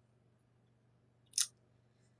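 A single brief, sharp mouth smack of lips parting, about a second and a half in.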